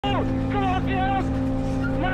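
The towing pickup truck's engine droning steadily at high, constant speed, with a man's voice calling out over it in the first second.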